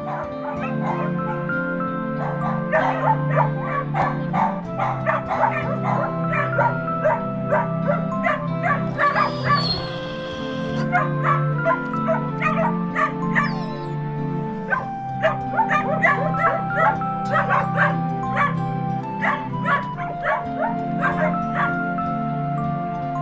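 Many dogs barking and yipping from kennels over soft background music with long held notes. The barking breaks off briefly around nine to ten seconds in, when a short high-pitched sliding sound is heard, then resumes.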